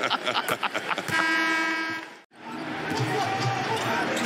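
Basketball arena game sound: crowd noise and a ball bouncing on the court, with a steady held tone for about a second. Just past the middle the sound cuts out suddenly to silence at an edit, then the crowd and dribbling return.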